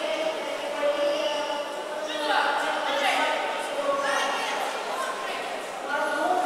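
Many overlapping voices echoing in a large sports hall: indistinct crowd chatter and calls from the spectators.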